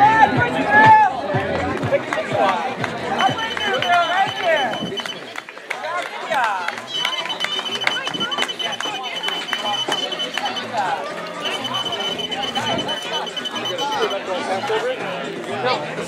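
Chatter of voices at a race finish. Over it, a high electronic beeping tone sounds in three stretches of a few seconds each, typical of a chip-timing system registering runners as they cross the finish mats.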